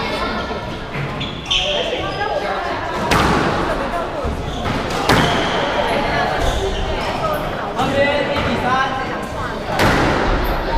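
Squash ball struck by rackets and hitting the court walls during a rally: sharp cracks about every two seconds, ringing in a large hard-walled court.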